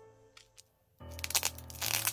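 Crinkling of clear plastic wrapping as a card is handled, starting about a second in and loudest near the end. Solo piano music plays underneath.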